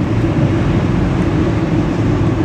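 A steady, loud rumbling background noise with most of its weight in the low range, holding level throughout with no distinct strikes or pitch changes.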